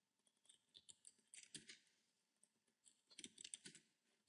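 Faint computer keyboard keystrokes, scattered single taps with short quick runs about a second and a half in and again near the end.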